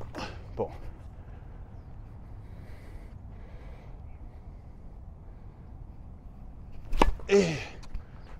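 Quiet outdoor tennis court, broken about seven seconds in by one sharp tennis racket strike on the ball, followed at once by a short falling grunt.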